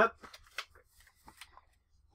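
Paper and cardboard rustling as printed papers are pulled out of an opened box: a few short, faint crackles that die away near the end.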